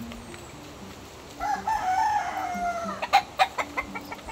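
A rooster crowing once, a long call that falls away in pitch at its end, followed near the end by a quick run of about five sharp clicks.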